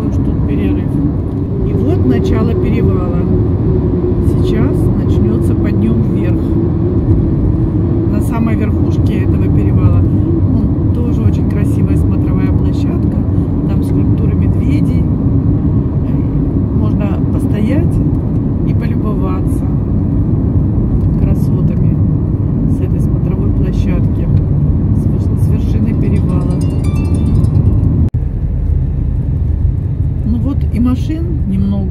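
Steady engine and tyre noise of a moving car heard from inside its cabin, with a brief dropout near the end.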